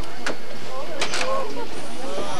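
Steady running noise of a zoo tour train, with a few sharp clicks and faint voices in the background.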